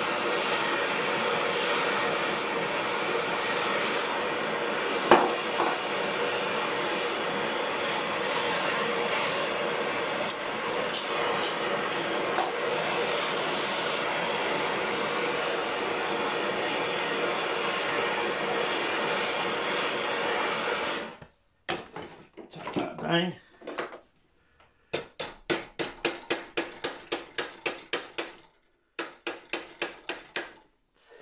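Handheld gas blowtorch burning steadily while heating a metal strap to bend it, then shut off suddenly about two-thirds of the way through. After a short gap, a hammer strikes the hot strap, first a few heavier knocks, then a quick run of taps about three a second as it is bent round.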